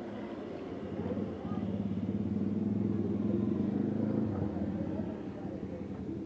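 A motor vehicle engine passing on the road: it grows louder about a second and a half in, is loudest in the middle, then fades toward the end.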